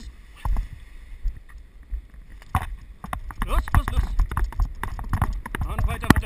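Wind buffeting the microphone during a paraglider's take-off run, with thumping running footsteps about twice a second. Voices or hard breathing come in over it in the second half.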